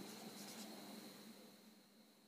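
Faint marker strokes on a whiteboard as a word is written, dying away after about a second.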